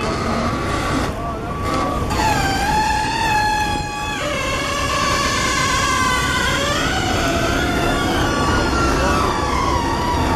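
Emergency vehicle siren wailing over street traffic noise. It comes in about two seconds in, and its pitch wavers and slides slowly up and down.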